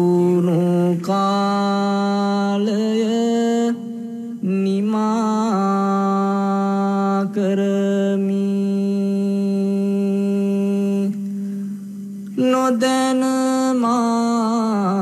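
A single voice chanting a Buddhist chant in long held notes. The pitch moves in small steps, with short pauses for breath about four seconds in and again near eleven seconds.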